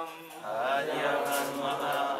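Voices chanting a Sanskrit verse in a slow, melodic recitation, rising again about half a second in after a brief pause.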